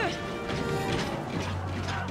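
Action-film battle soundtrack: music mixed with several sharp crashing impact effects, a few in quick succession early on.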